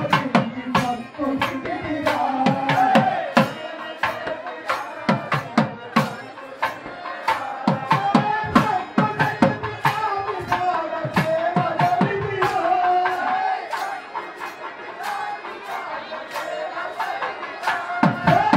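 Festival music: drums beaten in a steady, fast rhythm under a wavering melody line, with crowd noise. The melody fades in the last few seconds while the drumming continues.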